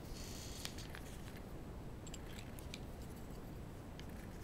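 Faint handling noise of a small boring-bar threading tool with a carbide insert turned in the fingers: a short rustle at the start, then a few light clicks.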